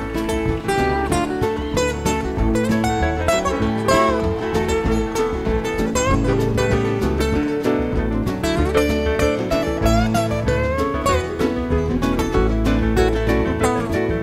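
Live acoustic country-style band playing an instrumental break: a picked acoustic guitar lead with bent notes over strummed acoustic rhythm guitar and a steady bass line.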